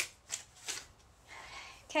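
Clothing being handled: a sharp click at the start, then two short fabric rustles within the first second and a fainter rustling in the second half.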